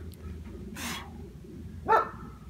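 A man's effortful breathing while bending a steel bar by hand: a sharp breath about a second in, then a short rising strained vocal sound near the end as the bar is worked to the snap.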